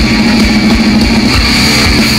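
A thrash metal band playing live and loud: distorted electric guitar over a drum kit with rapid kick-drum beats.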